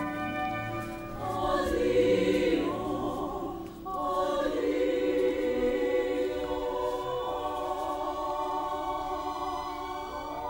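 Opera chorus of men and women singing together in a sustained passage. The voices drop briefly about four seconds in, then return.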